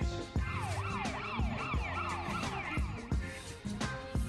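Background hip-hop-style music with a steady beat. A quick, repeated rising-and-falling siren-like wail runs over it from about half a second in until about three seconds in.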